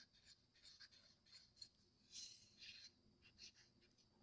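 Faint, irregular scraping of a stir stick against the inside of a small cup. Mold-making powder is being stirred with water to a loose, pancake-batter consistency.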